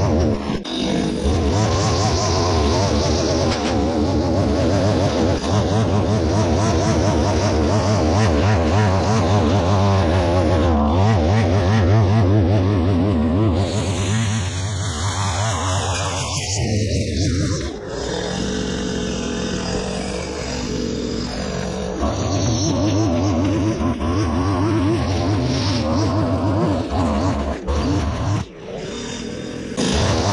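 Two-stroke line trimmer running at cutting speed, its nylon line cutting dry grass. The engine eases off for a few seconds past the middle, then runs up again.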